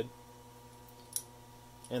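Quiet room tone with a steady low electrical hum, and one short faint click about a second in.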